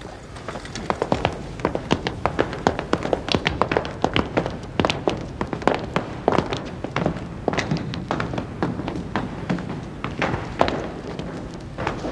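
Footsteps of several people walking on a hard floor: many irregular, overlapping taps, several a second.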